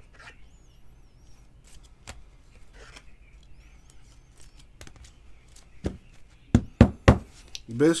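Rigid plastic top-loader card holders handled and stacked, giving faint scattered clicks, then a few loud sharp knocks in quick succession near the end.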